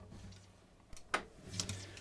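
Faint handling noise of an acoustic guitar being lifted and settled into playing position: a few light knocks and taps about a second in, over a faint low hum.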